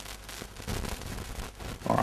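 Room tone and recording hiss with faint crackling between sentences of speech, and a brief voice sound near the end.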